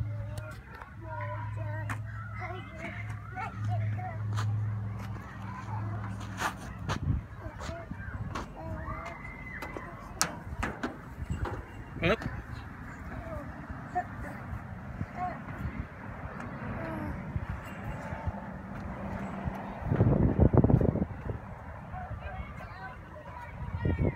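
Playground sounds: a child's voice and voices in the distance, with scattered knocks and light footsteps on a perforated metal play-structure deck. A low steady hum runs through the first six seconds, and a short loud rumble comes about twenty seconds in.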